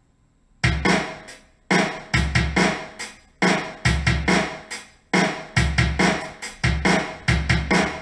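Playback of a drum-kit recording played on a keyboard through Ignite's virtual drum kit. A rhythmic pattern of bass-drum, snare and cymbal hits comes in about half a second in and cuts off suddenly at the end.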